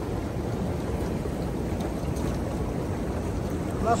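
Steady rushing and bubbling of an outdoor hot tub's churning jet water, deep and even throughout. Right at the end a man's voice calls out briefly.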